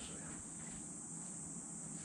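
Steady high-pitched insect chirring with low room noise, unchanging throughout.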